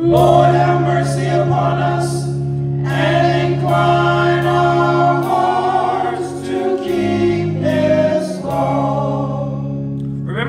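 Gospel praise team singing together in harmony over an instrumental accompaniment with sustained bass notes, the bass shifting through a short chord change near the end.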